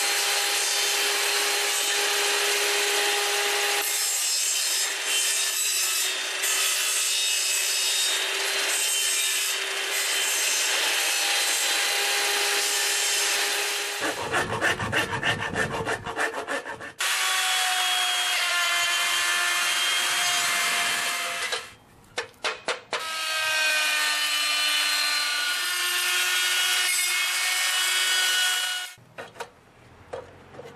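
Benchtop table saw cutting tenons in hardwood, the motor whining steadily as the blade works through the wood. About halfway through comes a few seconds of quick hand-tool strokes on the wood, then more power-tool cutting with a higher whine, which stops near the end.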